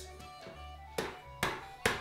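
Three sharp knocks, about a second in and then twice more in quick succession, as a sealed plastic bag of Oreo cookies is struck against a wooden table to crush them, over quiet background music.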